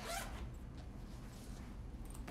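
A short zipper rasp at the start, as a small pouch or wallet is unzipped by hand, then only faint handling noise.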